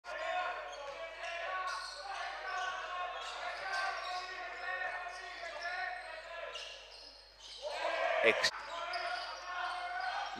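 Basketball being dribbled on a hardwood gym floor, with voices carrying through the echoing hall. A few sharp knocks come a little before the end.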